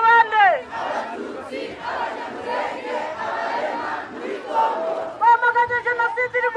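Call-and-response protest chanting: a leader's voice, amplified through a megaphone, ends its call with a falling pitch about half a second in. A crowd of marchers shouts back together for several seconds. The megaphone call starts again about five seconds in.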